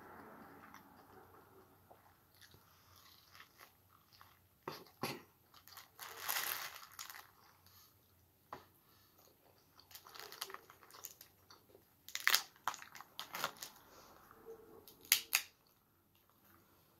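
A person eating corn on the cob and snow crab close to the microphone: chewing and biting with irregular crunches. Near the end come a few sharp cracks as a crab leg shell is snapped apart.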